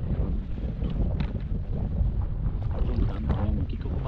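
Strong wind buffeting the microphone in gusts, over water slapping against the hull of a fishing kayak.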